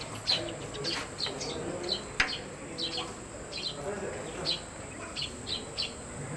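Small birds chirping outdoors, short high notes sliding downward, a few each second, over a faint murmur, with a sharp click about two seconds in.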